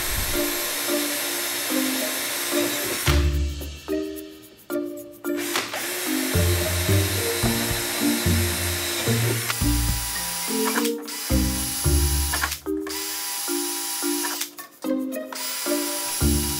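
Background music with a melody and bass line, over a DeWalt cordless drill running a number 30 bit through an aluminium spar tube, stopping and starting a few times between holes.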